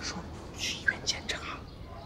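Whispered speech: a few short hushed phrases with hissy breath sounds.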